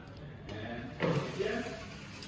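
A person's voice, a few words spoken briefly about a second in, over a low steady room hum.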